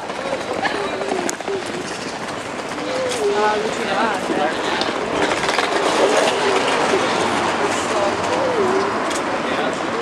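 Busy street ambience: a steady din with snatches of indistinct voices from passers-by.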